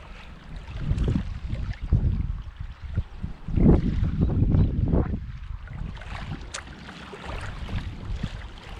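Wind buffeting an action camera's microphone: an uneven low rumble that swells and fades in gusts, strongest about four seconds in.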